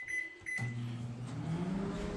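Panasonic Genius Sensor 1250 W microwave oven: two short keypad beeps, the second about half a second in, then the oven starting and running with a steady hum as it heats the corn.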